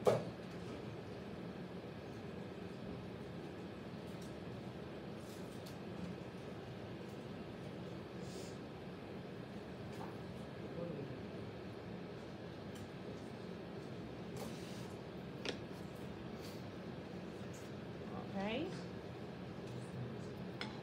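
Electric potter's wheel running with a steady low hum while a bowl is trimmed, with a sharp knock at the very start and a faint click later on.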